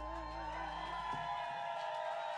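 A string band's final chord ringing out and fading: sustained fiddle and dobro tones over an upright bass note that dies away about a second and a half in.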